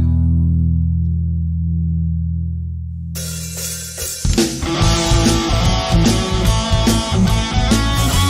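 Rock song instrumental passage between sung lines: a held low chord rings out and slowly fades, a guitar comes in about three seconds in, and the full band with drums kicks in a second later on a steady beat.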